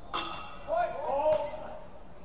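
Steel practice swords clashing once with a brief metallic ring, followed by a loud shout and a second sharp click about a second and a half in.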